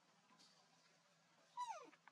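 A single short animal whimper, about one and a half seconds in, that drops steeply in pitch.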